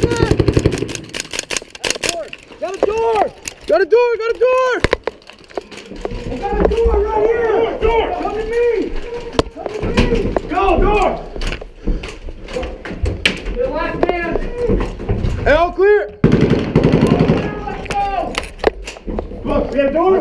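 Rifles firing simulation marking rounds (Simunition) in quick strings of sharp shots, thickest near the start and again near the end, with men shouting between them.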